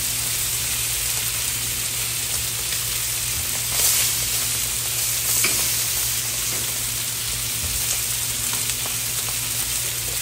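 Marinated pork chops sizzling on a Blackstone griddle's hot steel flat top: a steady frying hiss that swells briefly about four seconds in. A few faint clicks come from the metal spatula and fork turning the chops.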